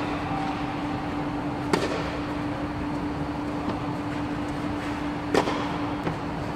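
Tennis balls struck by a racket on an indoor court: two sharp hits, one about two seconds in and one near the end, each with a short echo. A steady low hum runs underneath.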